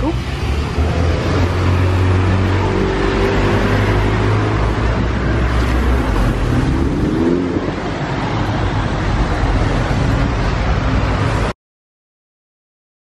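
Street traffic: a motor vehicle's engine running close by, a steady low hum under a wash of road noise. It cuts off suddenly near the end.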